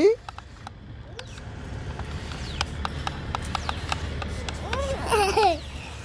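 Toy remote-control monster truck running, a rough rumble of its motor and wheels on the ground that builds over a few seconds, with scattered clicks. A child's short high exclamation near the end.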